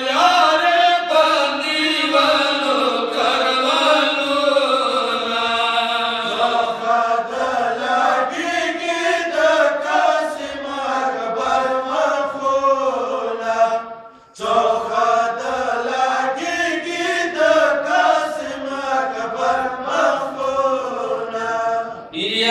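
A group of men chanting a nauha, a Shia mourning elegy, together into a microphone over a loudspeaker, in a long, drawn-out melodic line. About two-thirds of the way through there is a short break for breath.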